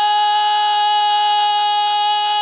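A man's voice holding one long, steady, high sung note: a zakir drawing out a line of his recitation.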